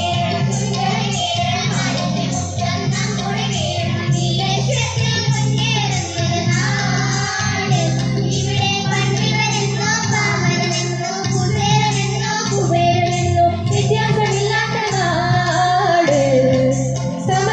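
A group of girls singing a song together into microphones, amplified through a loudspeaker, over steady low accompanying notes.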